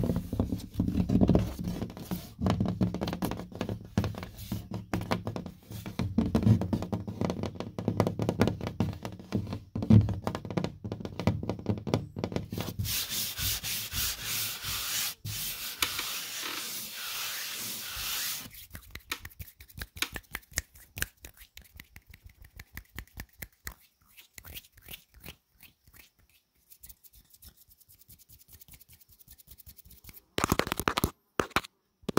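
Fingers and palm scratching and rubbing on sheetrock (painted gypsum drywall), with a steady rubbing sound for several seconds around the middle. This is followed by a long run of quick, soft fingertip taps on the board that grow fainter.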